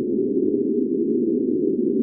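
Sine wave tone processed only through Absynth 5's Aetherizer granular effect, with no dry signal: a low, dense, grainy drone at a steady level. Its grain rate and feedback are being randomized, which changes little in the sound.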